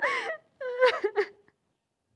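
A woman wailing while crying: a short high cry, then a longer, wavering one.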